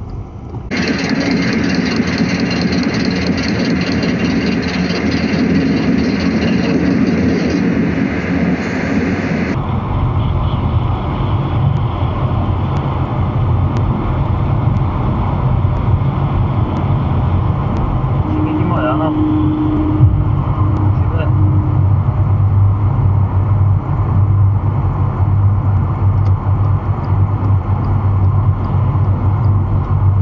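Steady low rumble of tyres and engine heard from inside a car driving at motorway speed. For the first nine seconds or so a louder, fuller sound covers it, then cuts off abruptly.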